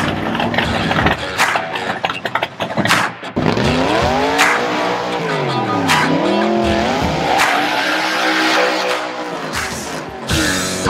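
A C2 Corvette Sting Ray's V8 revving up and down while its rear tires squeal spinning donuts, mixed with a rock music track. From about a third of the way in, the engine note rises, drops briefly past the middle, then climbs and holds.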